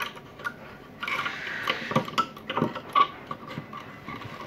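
Small metal parts of a variable-pitch propeller hub clicking and scraping as the pitch-control axle is worked down into the linkage by hand: a few sharp clicks, with a rubbing scrape from about a second in to near the end.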